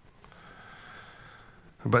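A man's faint, drawn-out breath at the microphone, then speech starting again near the end.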